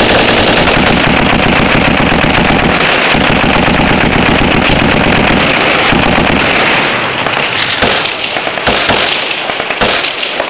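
Close-range gunfire: a mounted belt-fed machine gun firing long bursts together with rifle shots, dense and continuous for about seven seconds. Then it thins to separate shots with short gaps.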